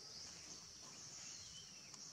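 Faint outdoor ambience dominated by a steady, high insect drone, with a short high chirp about three quarters of the way through.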